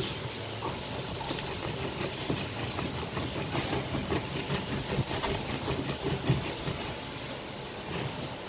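Manual plastic citrus juicer being worked by hand: the press cap is twisted back and forth over the ribbed reamer, crushing the fruit, giving a rapid irregular run of plastic scraping and squelching clicks. A steady low hum runs underneath.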